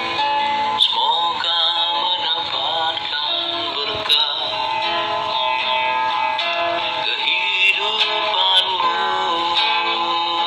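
A man singing a slow song with wavering, held notes over instrumental accompaniment, the sound thin and cut off in the highs as if played back through a phone speaker.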